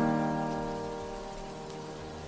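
Slow background music: a piano chord, struck just before, ringing and slowly fading, over a steady hiss of rain.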